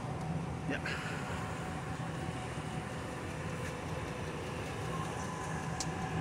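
Steady low drone of fire apparatus engines running at the fire scene, with a faint constant whine above it.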